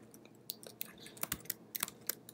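Computer keyboard typing: an irregular run of about ten quiet key clicks.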